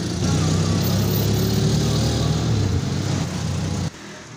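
Auto-rickshaw engine running steadily, heard from the passenger seat: a loud low hum with a rattling noise over it. It stops abruptly near the end.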